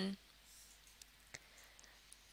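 Near silence: faint room tone with a few soft, isolated clicks.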